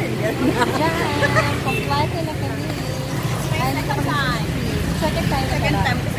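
Women talking, with a steady low rumble of street traffic underneath.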